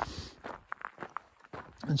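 A hiker's footsteps on a dirt mountain trail: a few soft, irregular steps.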